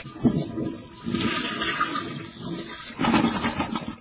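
Toilet flushing: a rush of water that dips about a second in and gets louder again near the end.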